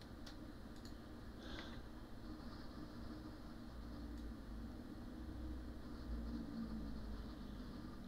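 Quiet room tone: a low steady hum with a few faint clicks in the first couple of seconds.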